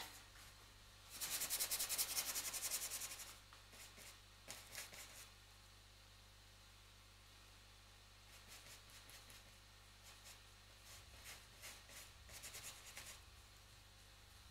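A paintbrush scratching and scrubbing oil paint onto a hard painting board in quick rapid strokes. The strokes come densest and loudest in a run from about one to three seconds in, with a few fainter scratchy strokes later.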